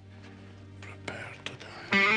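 Soft whispering over a faint, sustained musical drone. A loud strummed electric guitar comes in right at the end.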